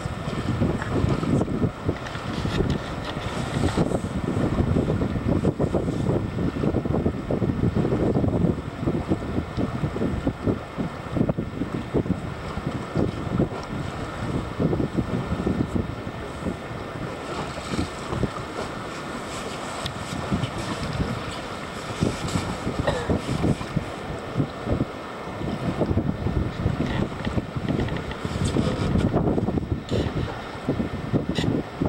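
Wind buffeting the camcorder microphone on an open boat, in gusts that rise and fall, over the wash of choppy sea water.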